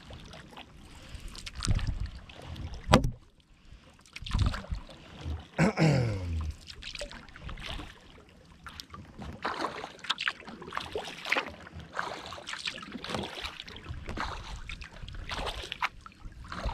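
Kayak paddling on calm water: the paddle blades dipping and pulling through the water with splashes and drips, roughly one stroke every second or so. A sharp knock about three seconds in is the loudest sound.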